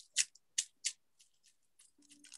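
Thin nail-art transfer foil crackling as it is patted with a fingertip onto a nail coated in tacky base gel, leaving its finish on the nail. A few short, crisp crackles in the first second, then fainter ticks.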